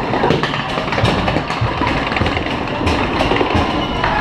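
Log flume boat being carried up a lift hill on its chain conveyor: a steady mechanical rumble and clatter with many clicks.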